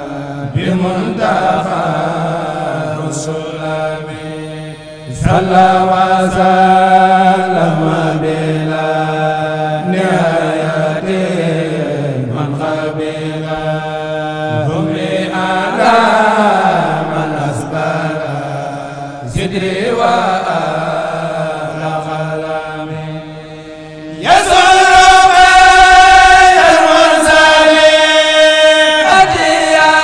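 Male voice chanting an Arabic khassida, a Mouride devotional poem, in long, drawn-out melodic phrases with short breaths between them. About four seconds before the end the chanting suddenly becomes louder and brighter.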